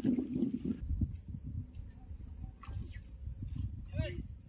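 Outdoor wind rumbling low on the microphone, with a few faint, brief distant calls above it.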